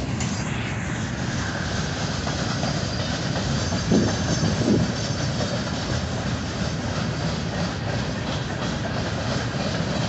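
Freight train boxcars rolling past at close range: a steady rumble of steel wheels on rail, with two louder knocks about four seconds in.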